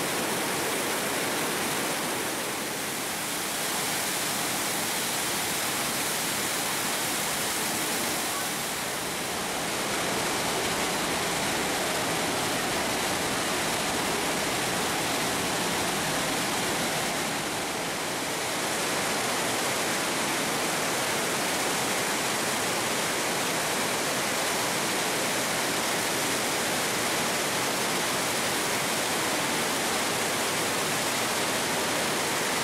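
Trümmelbach Falls, a glacial waterfall thundering down through spiral channels inside the rock: a loud, steady rush of falling water that dips slightly in loudness three times.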